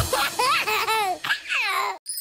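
A baby laughing: several short giggles in a row, each falling in pitch, with no music behind them.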